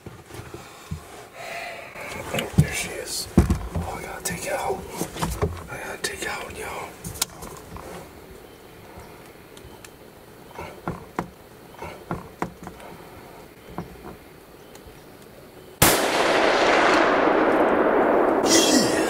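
A single rifle shot about two seconds before the end, a sudden loud crack whose noise carries on for the last two seconds, its hiss fading. Before it, faint small clicks and handling noises while the rifle is being aimed.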